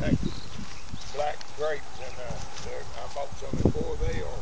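Border collie puppies giving a series of short whines and yips, about two or three a second, over rustling and low thumps as they scramble at the owner's feet.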